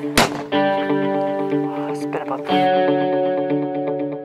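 Background music: plucked guitar chords ringing on, changing about half a second in and again near the middle, with a sharp click just after the start.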